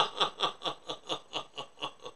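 A person laughing: a steady run of short 'ha' pulses, about four or five a second, each one falling in pitch, growing quieter as the laugh winds down.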